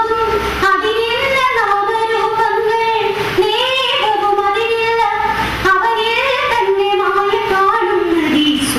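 A single high-pitched voice sings a slow melody in long held notes with ornamental bends and slides, breaking briefly between phrases every two to three seconds.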